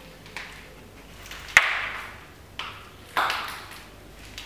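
A series of about five irregular, sharp knocks, each ringing briefly and dying away. The loudest comes about a second and a half in, and another strong one just after three seconds.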